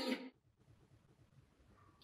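The last of a woman's loud shouted "Nei!" cuts off a fraction of a second in, followed by near silence (room tone).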